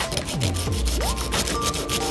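Small piece of sandpaper rubbed by hand over the hardened fibreglass glassing of a surfboard repair, in short quick strokes, smoothing its rough edges.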